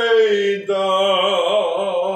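A man singing unaccompanied: a note slides down, then about two-thirds of a second in he starts a new long note and holds it with a wavering vibrato.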